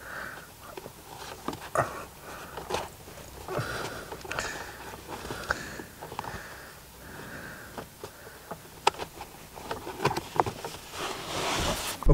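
A plastic 12-volt socket cap being worked and pushed into a hole in a car's footwell floor under the pulled-back carpet: scattered small clicks and rustles. Between them, soft breathing through the nose.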